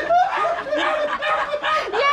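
People chuckling and laughing, mixed with some talking.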